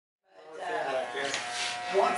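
Electric hair clippers buzzing steadily while shaving the nape, the sound fading in about a third of a second in.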